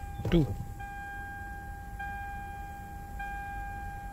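The Lexus GS350's dashboard warning chime sounding as a steady high electronic tone that restarts about every second and a quarter, with the ignition on and the power-steering (P/S) error showing.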